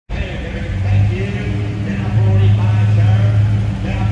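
1970 Plymouth Satellite's 318 cubic-inch V8 running at low speed as the car rolls slowly past, a steady low rumble, with voices faintly behind it.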